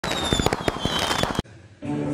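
Fireworks crackling with rapid, irregular pops and a faint whistle falling slowly in pitch, cutting off suddenly about one and a half seconds in. Music starts just before the end.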